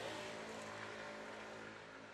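Street background with the steady low hum of a running vehicle engine, slowly fading away.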